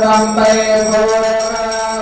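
Devotional mantra chanting by Ayyappa devotees at a temple puja: one steady, held sung note that eases off slightly toward the end.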